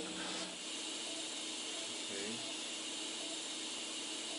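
Steady, even background hiss of room tone, with a faint, brief voice-like sound about two seconds in.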